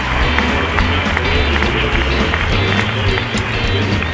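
Music with a strong, steady bass line.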